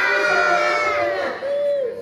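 A group of children answering together in a long, drawn-out chorus, many voices held on one shout, thinning out about a second and a half in.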